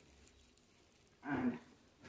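Quiet room tone, broken about a second in by one short voiced sound, a brief vocal utterance lasting under half a second.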